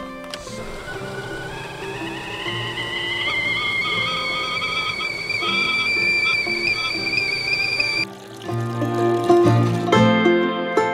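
Stainless steel stovetop whistling kettle on a gas hob whistling at the boil, its tone rising steadily in pitch from about a second in and then cutting off suddenly near the end, over background music.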